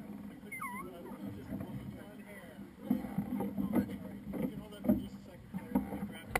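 Low, indistinct voices and a few knocks over a steady low hum. A short whistle-like chirp dips and rises about half a second in.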